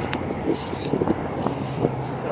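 Steady low hum of a car ferry under way, with people talking in the background.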